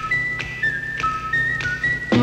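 A whistled tune in the music played on the AM radio broadcast: single clear notes held briefly and stepping between a few pitches, over a low steady hum.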